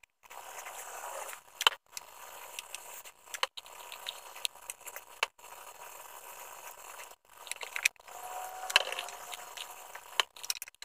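Small maple and walnut inlay pieces clicking and scraping against each other and the wooden board as they are fitted by hand, as scattered sharp clicks over a steady hiss.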